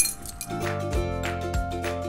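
A ring of metal measuring spoons clinking together once, right at the start. Then background music with held tones and a steady beat.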